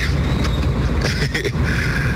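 Steady low rumble with hiss on the studio microphone feed, the same noise bed that runs under the talk.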